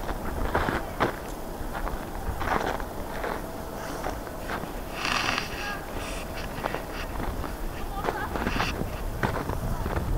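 Footsteps crunching in snow at a walking pace, over a low rumble of wind on the microphone.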